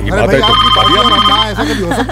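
Phone ringing with an electronic ringtone for about a second, over the chatter of many voices at a crowded gathering.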